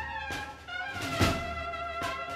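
Brass band playing a slow processional march: held brass notes, with one heavy drum stroke about a second in.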